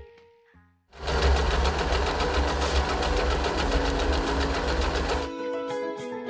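Usha Janome Wonder Stitch electric sewing machine running at speed, a fast, even mechanical rattle of stitching. It starts about a second in and stops suddenly about five seconds in, where music takes over.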